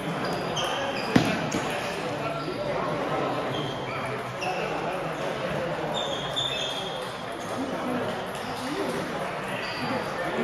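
Table tennis ball clicking off rubber paddles and the table in a rally, with one sharp, loud click about a second in and scattered lighter pings after it, over a murmur of voices echoing in a large hall.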